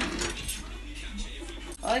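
Faint, light clinks of a spatula against a nonstick pot and jangling bracelets as seasoned raw beef starts to be mixed, a few small clicks in the first half.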